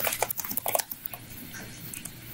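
Computer keyboard typing: a quick run of keystroke clicks, about a handful in the first second, then it stops.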